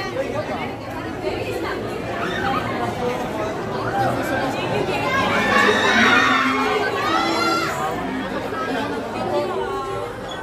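A crowd of people talking at once, many voices overlapping in a steady hubbub that swells louder for a few seconds near the middle.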